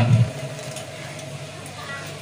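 A man's voice over a loudspeaker ends a word just at the start, followed by a pause filled only with faint, steady background noise from the open-air gathering.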